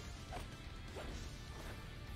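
An anime fight scene's soundtrack playing quietly: background music with crash-like impact effects, and faint short rising whooshes about a third of a second and a second in.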